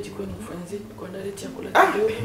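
A person's wordless voice: groaning and exclaiming sounds that rise and fall in pitch, with a sharp loud burst near the end.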